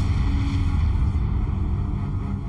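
Deep, steady rumbling sound effect of a star exploding as a supernova, with faint held tones above it.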